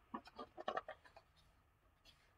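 A sheet of paper being handled: a quick run of faint rustles and crinkles in the first second, then stillness.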